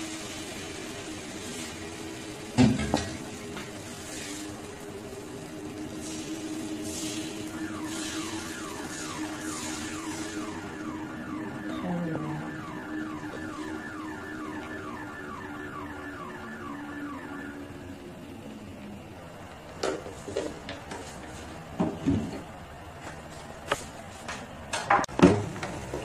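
Steady tones with a repeating chirping pattern run through most of the first two-thirds. Against them, a metal spatula knocks once on the electric griddle pan early on and gives a run of clicks and scrapes near the end as it spreads the batter.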